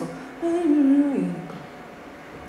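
A voice hums a short phrase of about a second that steps down in pitch, as a strummed acoustic guitar chord fades out at the start.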